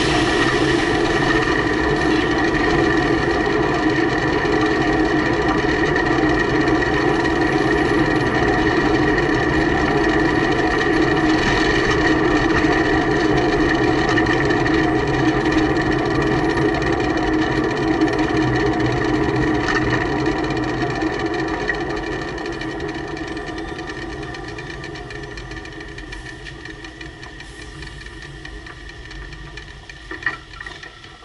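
Heavy truck's diesel engine running close by at a steady, unchanging pitch, fading away gradually over the last several seconds.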